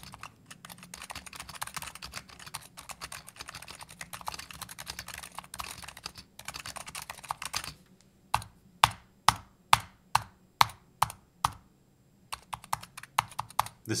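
Razer Huntsman V2 TKL mechanical keyboard with Gen 2 red linear optical switches and PBT keycaps: rapid continuous typing for about seven and a half seconds. Then single keystrokes come about twice a second, each a sharp clack, with a few more after a short gap.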